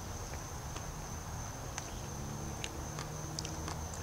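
Steady high-pitched insect trill in the background, with a few faint scattered clicks.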